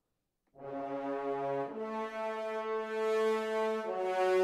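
Sampled orchestral French horns from a virtual instrument playing long sustained chords, starting about half a second in. The chord changes twice, the lowest note stepping up partway through.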